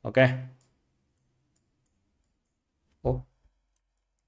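A man's voice says "ok", then near silence, broken about three seconds in by one short voiced sound.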